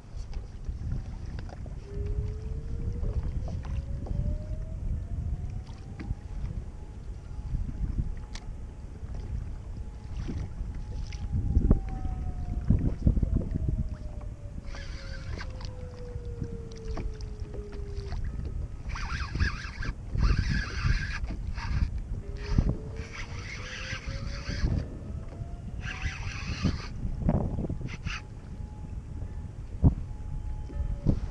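Wind buffeting the microphone and water against a plastic kayak's hull make a steady low rumble. A faint tone slowly rises, holds and falls twice. From about halfway through, several bursts of a spinning reel being cranked come through as a hooked fish, a fluke, is reeled in.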